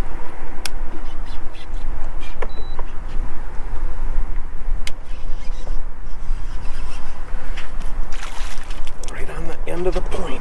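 Wind buffeting the microphone on an open boat: a steady low rumble that rises and falls, with a few sharp clicks. Near the end a brief splash as a hooked largemouth bass is brought to the surface at the boat.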